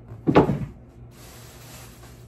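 Items being handled and set down while sorting clothes: a single heavy thud about a third of a second in, then about a second of rustling.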